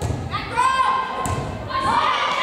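A volleyball served and struck with dull thuds, near the start and again about a second later, amid shouting voices of players and spectators in a gymnasium.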